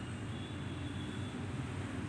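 Quiet room tone: a steady low hum with no other event.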